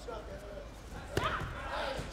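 A single sharp thud about a second in, from taekwondo sparring on the competition mat, with voices going on around it.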